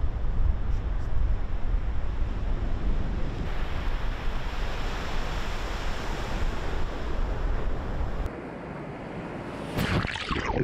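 Wind buffeting the microphone over surf for the first few seconds. Then, up close at the waterline, waves break and wash around a dredge pipeline. Just before the end a louder surge of water washes over the camera.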